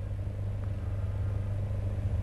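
Steady low hum with a faint hiss under it, the background noise of the studio sound feed in a gap between words.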